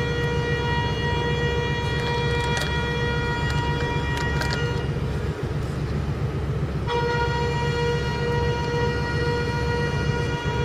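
Ship's horn sounding a long, steady, fixed-pitch blast that breaks off about halfway through and starts again a couple of seconds later, over the low rumble of a vessel's diesel engine getting under way.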